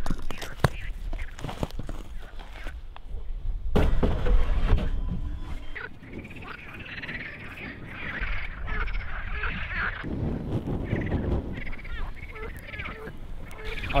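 Frogs croaking, a run of repeated calls through the second half, with a few sharp knocks of stones being set into a fire ring near the start and low rumbles around the middle.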